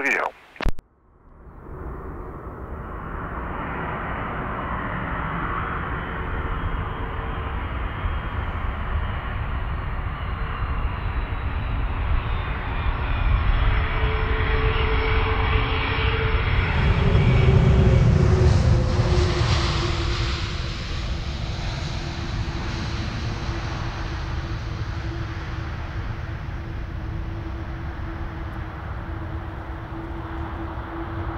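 Jet airliner landing: the engine noise builds steadily, peaks loudly with a deep rumble a little over halfway through, then eases off. A steady whine slides lower in pitch as it fades.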